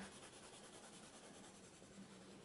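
Faint scratching of a coloured pencil on sketchbook paper, shading in quick up-and-down strokes.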